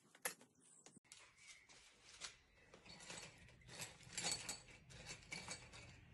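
Faint, scattered clicks and light taps of small objects being handled, with a sharper click just after the start and a busier run of taps in the middle.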